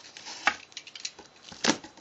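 Hands handling a large cardboard shipping box: a few light knocks and scuffs on the cardboard, the sharpest about half a second in and another near the end.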